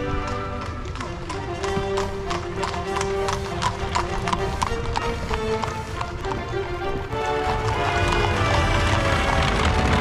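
Horses' hooves clip-clopping on a paved road as horse-drawn carriages pass, a quick run of sharp hoof strikes, with music playing over it throughout.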